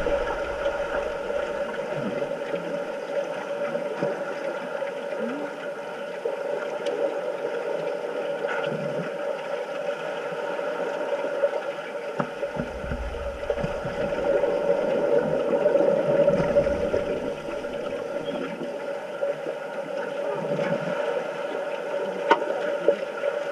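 Underwater sound of a swimming pool picked up by a submerged camera: a steady muffled drone with scattered faint clicks and knocks from the water and players. A low rumble swells around the middle.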